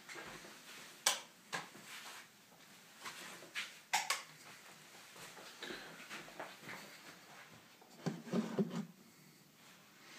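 Handling noise close to the microphone: scattered clicks and knocks with faint rustling as a person moves about. There is a sharp knock about a second in and another at about four seconds, and a brief low murmur near the end.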